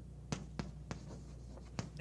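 Chalk writing on a chalkboard: four short, sharp taps and strokes of the chalk against the board, over a low steady hum.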